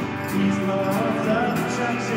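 Live indie-rock band playing, with electric guitar and Nord Electro keyboard holding sustained chords and a voice singing over them from about a second in.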